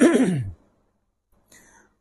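A man's chanted Arabic recitation trailing off on a steeply falling pitch in the first half second, then silence with a faint intake of breath near the end.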